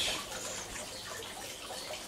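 Water from a garden hose running steadily into a fish tank as it fills.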